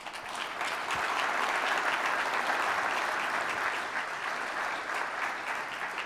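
An audience applauding, coming in strongly within the first second and easing off slightly over the last couple of seconds.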